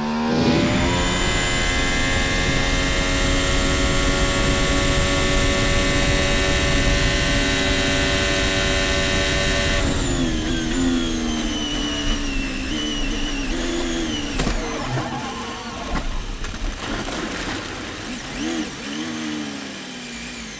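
Formula 1 1.6-litre turbo V6 engines heard onboard. First a Mercedes-powered McLaren is held at steady high revs at full throttle for about ten seconds. Then a Ferrari's engine note drops and wavers up and down as the car spins off into the gravel, with a single sharp click partway through.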